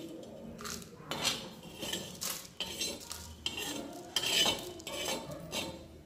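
Metal spatula scraping and knocking across an iron tawa in irregular strokes, gathering dry-roasted whole spices off the pan.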